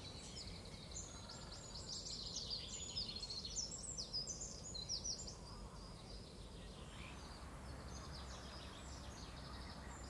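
Small birds twittering: many quick, high chirps overlapping, busiest around the middle, over a faint low rumble of outdoor background.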